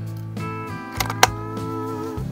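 Background guitar music, with two sharp metallic clicks about a second in, a quarter second apart: the bolt of a single-shot .22 target rifle being worked to chamber a round before the next shot.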